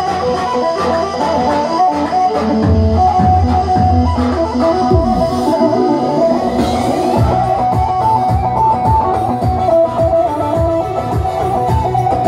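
Live halay dance music, instrumental: a fast, plucked-sounding melody line over keyboard and drum beat, with no singing. A deeper bass beat comes in about five seconds in.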